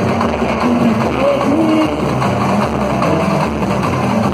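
Live samba-enredo from a samba school, with the drums and percussion of its bateria and voices singing the melody over them.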